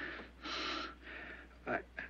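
A young man's audible breaths between halting, emotional phrases: a short breath at the start and a longer one about half a second in, then he begins to speak again near the end.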